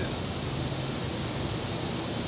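Steady background hiss with a faint low hum, unchanging throughout.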